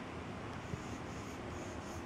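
Pencil scratching on sketchbook paper in a series of short strokes.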